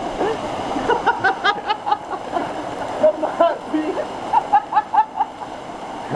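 Steady rush of a waterfall pouring into a plunge pool, with people's voices calling out over it several times.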